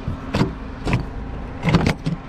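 A car's rear door handle is pulled and the door latch opens, giving a few sharp clicks and clunks, the loudest near the end. A steady hum runs underneath.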